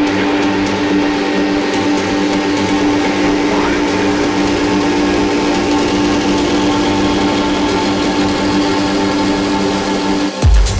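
Electronic dance music in a breakdown: a sustained synth drone holding steady tones without a beat, with a faint rising sweep about three and a half seconds in.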